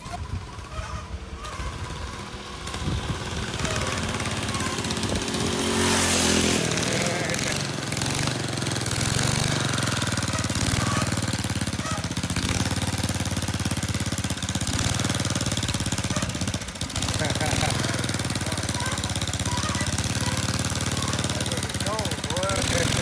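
An engine running steadily, rising in pitch a few seconds in, with indistinct voices.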